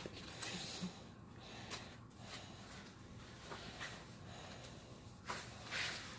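Quiet rustling and small clicks from a dog's winter coat being handled and its straps adjusted, with a short breathy burst near the end.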